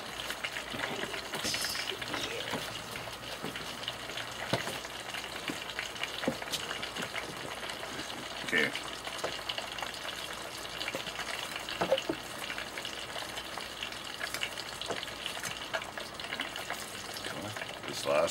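Battered food deep-frying in an electric deep fryer's hot oil: a steady crackling sizzle, with a few short knocks as the stuck batch is worked loose from the bottom.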